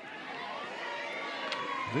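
Ballpark crowd murmur with scattered voices, growing a little louder through the pitch, and a faint sharp pop about one and a half seconds in.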